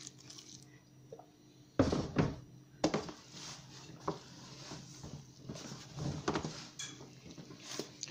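Hands kneading a stiff flour-and-water dough in a plastic bowl: irregular squelches and dull thumps, starting about two seconds in, as the freshly added water is worked into the dough.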